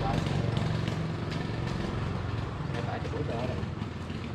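A motorbike engine running low and steady, fading over the few seconds, with faint voices talking briefly near the start and again near the end.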